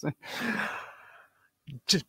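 A man's long, breathy sigh that fades out over about a second, followed near the end by the start of a spoken word.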